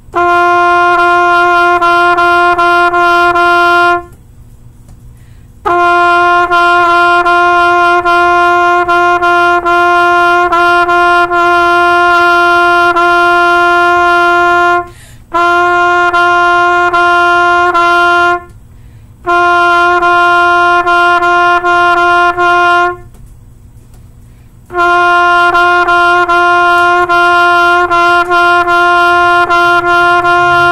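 Trumpet playing a rhythm exercise in three-four time on a single repeated note, written G (concert F). The tongued notes vary in length, with a few short gaps between phrases.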